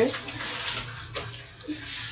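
Rustling and handling noise as binders are grabbed and moved about over bedding, with a brief faint murmur of voice a little past a second in.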